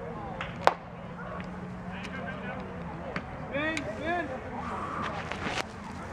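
A single sharp pop less than a second in as a pitched baseball arrives at home plate. People's voices call out around the field a few seconds later.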